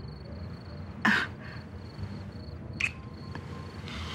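A short breathy vocal "uh" about a second in, over a faint steady pulsing chirp of crickets in the background, with a brief sharp tick near the end.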